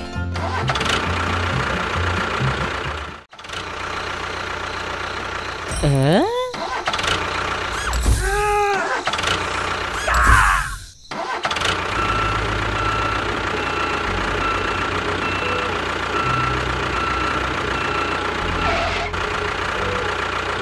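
Tractor engine sound starting and running steadily under background music. A few rising and falling pitched sounds come about a third of the way in, and the engine runs evenly through the second half.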